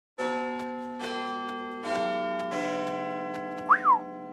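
Bell chime striking four notes, each struck under a second apart and ringing on. Near the end a short swooping whistle that rises then falls in pitch, the loudest sound.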